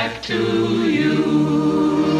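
Choir singing, with a brief break just after the start and then a long held chord.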